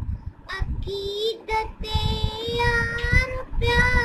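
A child singing a song in Urdu, drawing out long held notes.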